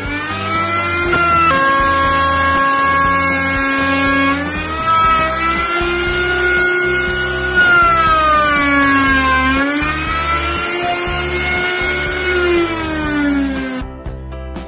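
Handheld electric router running at high speed and cutting a slot along the edge of a wooden door for a steel plate: the motor whine rises as it spins up at the start, then sags in pitch and recovers twice as the bit bites into the wood, over a steady hiss of chips.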